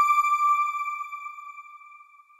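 A single chime, the audio sting of a news site's end-card logo, ringing at one steady pitch and fading away steadily.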